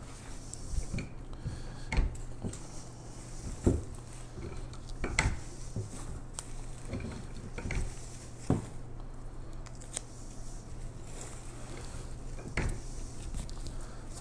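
Handling noise from silk lavender bush stems being pulled apart and shaped by hand: light rustling with scattered sharp clicks and knocks, over a steady low hum.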